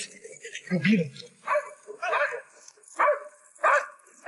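Military working dog barking in a steady run of short barks, about one every second, on the scent of a survivor.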